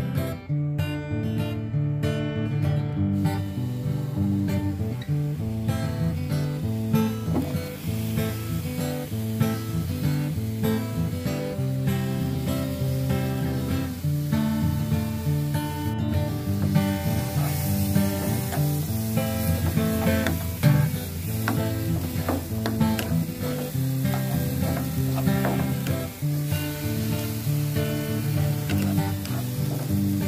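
Chopped red onion and ginger sizzling in oil in a non-stick frying pan, with a spatula stirring and scraping; the sizzle grows louder about halfway through. Acoustic guitar music plays throughout.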